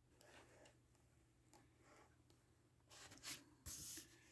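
Near silence broken by faint rustling of a picture-book page being turned, with a few short paper rustles near the end.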